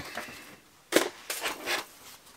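Plastic blister pack of jigsaw blades being opened and handled: a few short crackles and snaps, the sharpest about halfway through.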